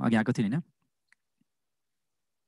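A voice speaking, stopping just over half a second in, then silence broken by one faint click.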